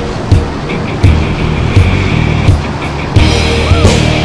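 Background music: a song with a steady drum beat, about three beats every two seconds.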